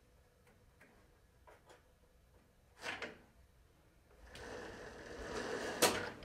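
Handling noises at a rowing machine's foot carriage as the drive cord is looped onto the drive hook: a few faint clicks and a short rustle, then from about four seconds in a longer rubbing, sliding noise that ends in a sharp click.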